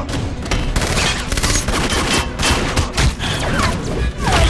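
Movie fight-scene sound effects: a dense run of rapid gunshots and hard impact hits.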